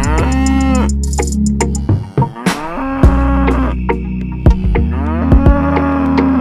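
Cow moos, two long calls, one at the start and one near the end, over background music with a steady beat.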